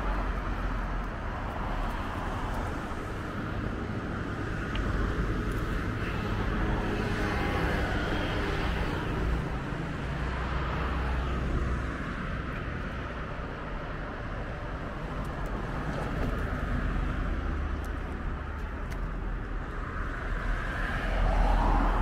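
Road traffic on a seafront street: a steady rumble of cars, with one swelling past about a third of the way in and another coming close and loud near the end.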